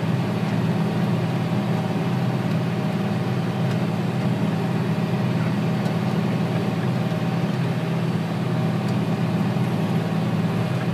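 Tractor diesel engine running steadily under load while pulling a Simba X-Press disc cultivator through the soil, a constant low drone heard from the tractor's cab.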